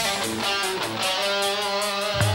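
Melodic hard rock (AOR) music: electric guitar playing over a steady drum beat, with the bass thin until the full band comes back in at the very end.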